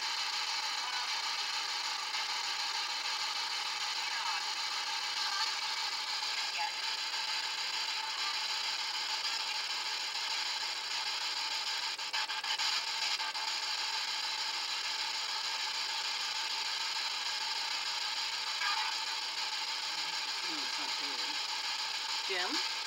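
A steady high-pitched hiss with faint steady whine tones running through it, with a few faint clicks about halfway through.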